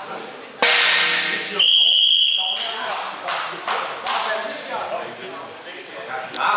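A sudden loud burst of noise, then a referee's whistle blown as one steady, shrill note for about a second, signalling a stop in the wrestling bout. Several sharp knocks and voices follow.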